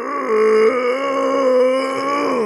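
A long, drawn-out held vocal shout that answers "Are you ready?". It holds one pitch and steps up a little about two-thirds of a second in.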